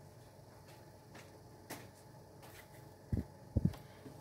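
Faint room tone with a small click, then, about three seconds in, two soft, low thumps of a hand on the tabletop as it reaches for a tarot deck.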